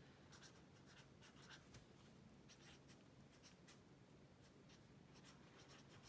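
Faint scratching of a pen writing on spiral notebook paper: short, irregular strokes.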